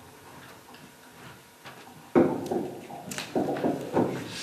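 Handling noise at a table microphone: faint ticks, then about halfway a sudden loud bump and rustling, followed by a few sharp clicks.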